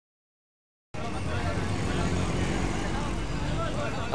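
Dead silence for about a second, then a steady bed of street ambience: traffic noise with faint background voices.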